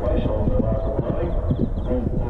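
Hoofbeats of an event horse jumping a cross-country bench fence and galloping on over turf: a run of dull thuds, with a voice sounding over them.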